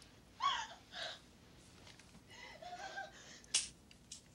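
A young girl sobbing in short, high-pitched cries, with a single sharp click near the end.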